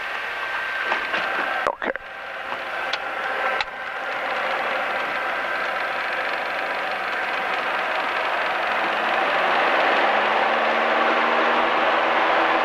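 Light single-engine piston aircraft's engine and propeller at full power on a touch-and-go takeoff roll: a steady drone and rush that grows gradually louder as the aircraft speeds up. Two brief cut-outs occur in the first four seconds.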